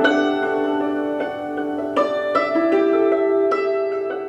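Hammered dulcimer played with wooden hammers: a slow waltz melody of struck notes that ring on and overlap one another.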